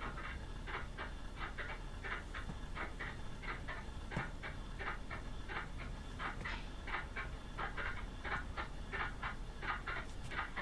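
A man panting heavily in quick, ragged breaths, about three a second, without a break.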